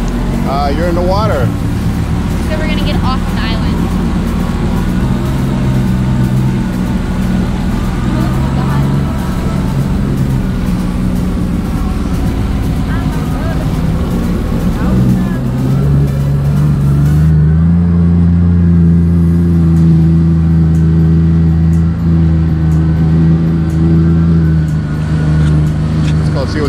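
Sea-Doo personal watercraft engine running steadily under way at speed. About two-thirds of the way through, its pitch steps up as it speeds up, then holds steady and louder.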